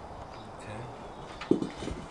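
Low, steady background noise with no distinct event, then a man's voice saying a short word near the end.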